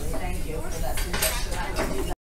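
Small metal objects clinking and clattering against each other in short, irregular clinks, the loudest a little past a second in, with children's voices in the background.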